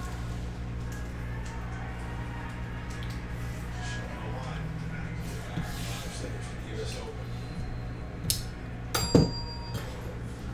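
Trading cards being handled and sorted on a table: light clicks and taps, a sharper click about eight seconds in and a loud knock just after nine seconds, over a steady low hum.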